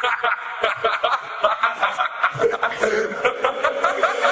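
A sampled laugh, rapid 'ha-ha-ha' pulses about five a second, chopped and repeated as the hook of a hardstyle track during a breakdown without kick drum.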